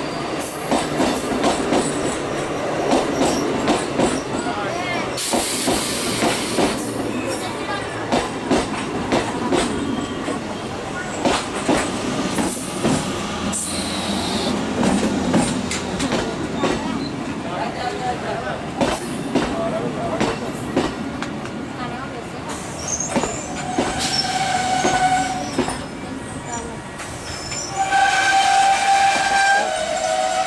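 Electric multiple-unit (MEMU) passenger train running through a station, its wheels clattering over the rail joints with a continuous rumble. Its horn sounds briefly about three quarters of the way through and again, longer and louder, near the end.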